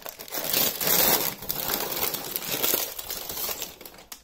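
Sealed clear plastic bags of small plastic building pieces crinkling continuously as they are handled.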